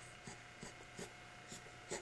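Quiet room tone with a faint steady hum and about five soft ticks, roughly one every half second.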